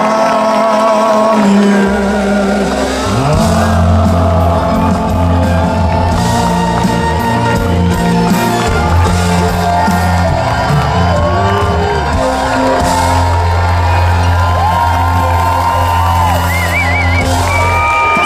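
Live schlager band performing with lead and backing vocals over keyboard, guitar, bass and drums, with crowd whoops mixed in. The bass comes in about two seconds in and the band plays on steadily after that.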